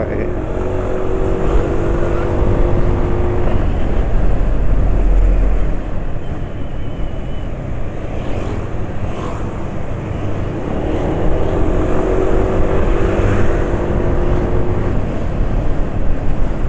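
Scooter engine pulling steadily as the bike speeds up in traffic, with wind rumbling on the microphone, loudest about four to six seconds in. Its engine note rises twice, at the start and again about ten seconds in.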